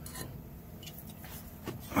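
A few short, quiet hisses from an aerosol can of penetrating oil sprayed through its straw onto a stuck mower PTO clutch, over a low steady hum.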